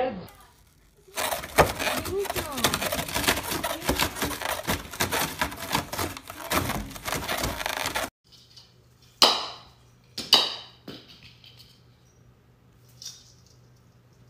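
Dense crackling and crunching for about seven seconds as a cat tears apart a lump of white foam, stopping suddenly. Later come two brief swishing sounds, about a second apart.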